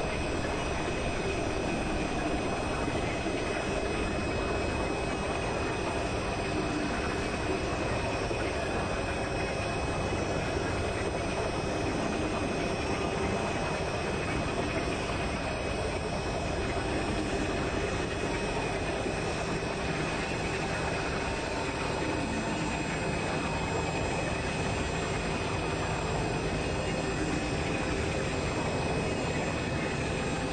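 Experimental electronic noise music: a dense, steady synthesizer drone of rushing noise with a few thin high tones held above it, unchanging throughout.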